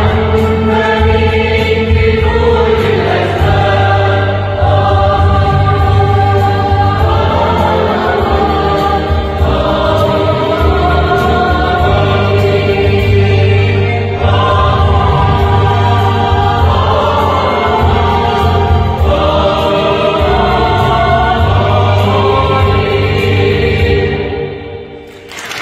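Mixed choir of women and men singing a Christmas hymn in sustained chords that shift every few seconds.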